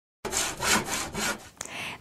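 Saw-like rasping strokes, about four or five a second, fading out after a second or so, most likely a hand-saw sound effect in the tool-themed intro.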